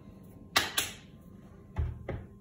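Two sharp knocks about a quarter of a second apart, then a duller thump near the end.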